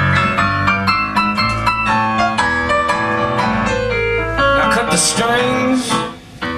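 Live band playing an instrumental passage: electric piano chords and runs over electric guitar and a drum kit, loud and busy throughout.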